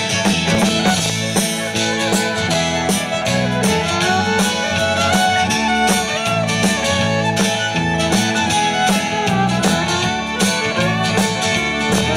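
Live country-rock band playing an instrumental break between verses: a fiddle carries the lead over strummed acoustic guitar and drums keeping a steady beat.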